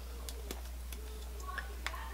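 Quiet room with a steady low hum and a few faint, sharp clicks as a liquid lipstick tube is picked up and handled.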